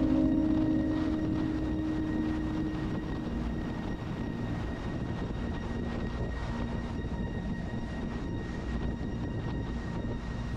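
BMW R1200RT's boxer-twin engine running at road speed under steady wind noise. A held note from background music fades out in the first few seconds.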